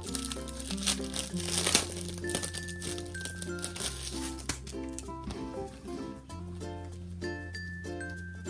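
Plastic packaging crinkling as a mask filter is handled, over background music with a light, plucked-sounding melody and held bass notes. The crinkling fades out about halfway through, leaving the music.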